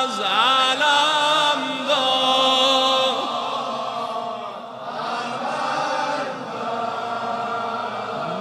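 A male reciter chanting a mersiye, a Shia mourning elegy, in long, ornamented held notes whose pitch wavers and turns. The voice grows softer about four seconds in.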